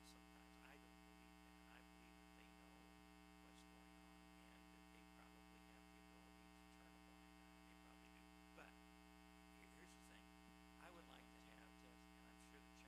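Near silence with a steady low electrical mains hum on the recording, and a few faint scattered clicks.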